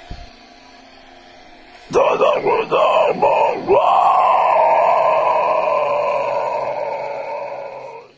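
Harsh deathcore screamed vocal. After a quiet start, a few short choppy screams come about two seconds in, then one long held scream that slowly fades and cuts off at the end.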